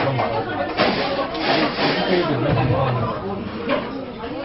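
Background chatter of several voices talking at once, with a deeper voice clearest through the middle seconds.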